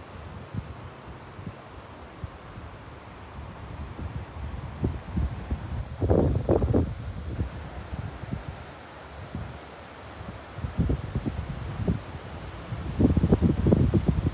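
Wind buffeting the microphone in gusts over a steady faint rush. The gusts are strongest about six seconds in and again over the last few seconds.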